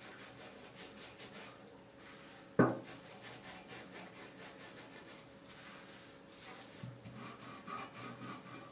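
Gloved hands rubbing gritty coffee-ground paste into a deer antler: a quiet, continuous rapid scratching and rubbing. One sharp knock about two and a half seconds in is the loudest sound.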